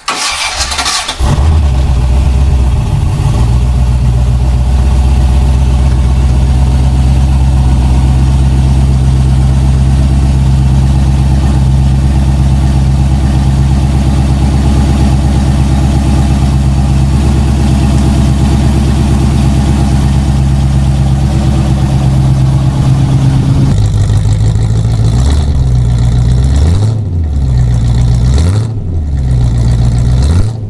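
Freshly built Rover V8 firing up for the first time: it catches about a second in and settles to a steady fast idle. Near the end it is blipped several times, revving up and falling back.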